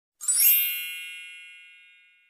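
A logo-intro chime sound effect: a single bright ding struck about a quarter-second in, with a shimmer of high ringing overtones that fades away over nearly two seconds.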